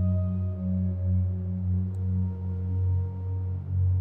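Ambient background music: a low steady drone under a few long held higher notes, which shift to new pitches about halfway through.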